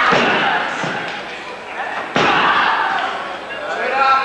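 Two heavy slams on the wrestling ring, about two seconds apart, each echoing through the hall, as a wrestler stomps down at an opponent lying on the mat.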